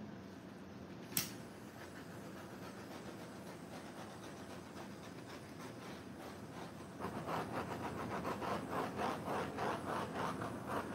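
A heat tool blowing steadily over freshly poured epoxy resin to set it, with one sharp click about a second in. From about seven seconds the noise grows louder and rougher.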